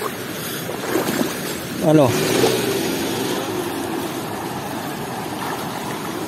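Shallow river running over stones, a steady rush of water.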